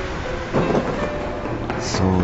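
Steady rushing rumble of noise with a few short knocks in it.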